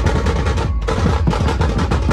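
Dhumal band drums played in a fast, dense roll of sharp strokes over the band's music, with a brief break near the middle.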